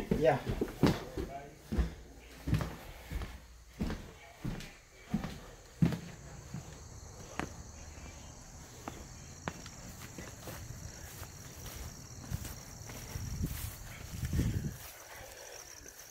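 Footsteps of a person walking at an even pace, about one and a half steps a second, first on a wooden floor. They then fade to soft, faint steps out on grass, where a faint steady high-pitched hiss runs through the quieter part.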